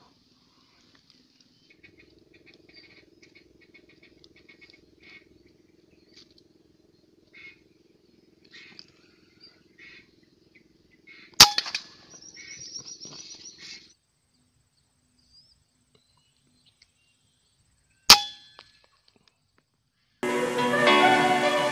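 Two sharp shots from a scoped rifle about seven seconds apart. The first is followed by a couple of seconds of rapid high-pitched calling, and faint scattered bird calls come before it.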